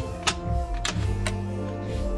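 Background music with three sharp clicks from a Honda K20Z3 manual transmission's shift mechanism being moved by hand through the gears.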